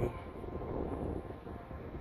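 Steady low rumble of outdoor background noise, with no clear event standing out.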